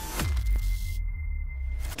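Logo-sting transition sound effect: a quick falling swoop that drops into a deep bass rumble, with a thin steady high tone held over it, all cutting off just before the end.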